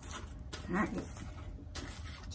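Small cardboard box being opened by hand: its flaps and the packing inside rustle and scrape in a few short bursts.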